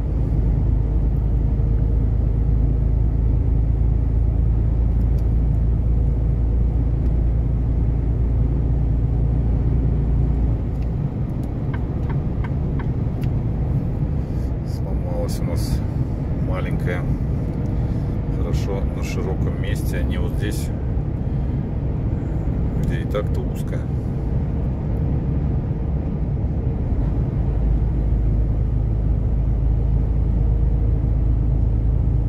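A truck's engine and tyre noise heard from inside the cab while driving: a steady low drone, heavier for about the first ten seconds and lighter after. A few short clicks come through around the middle.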